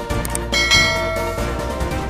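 Background music with a bright bell-like chime sound effect that rings out about half a second in and fades within a second.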